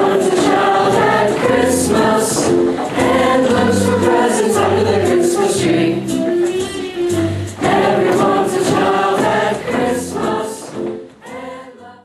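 A choir singing with instrumental accompaniment over a steady, pulsing bass line; the music fades out near the end.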